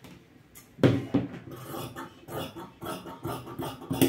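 Large tailoring scissors cutting through folded fabric: a loud knock about a second in, then a run of short snips, about two or three a second.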